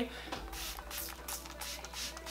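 Fine-mist pump spray bottle of facial toner spritzed several times in quick succession, each pump a short hiss, with faint background music underneath.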